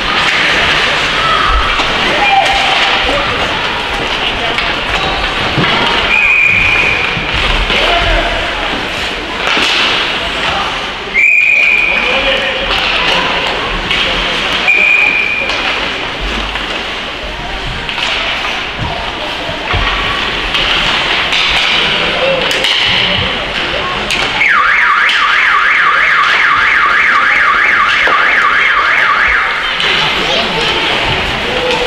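Ice rink din during a youth hockey game: skates, sticks and voices, cut by three short high whistle blasts from the referee about 6, 11 and 15 seconds in. For the last five seconds the rink's electronic buzzer sounds a loud, evenly pulsing tone.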